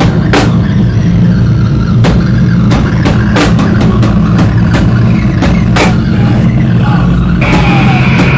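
Live heavy rock band playing loud: distorted guitar and bass hold a heavy low drone under scattered drum and cymbal hits. A screamed vocal comes in near the end.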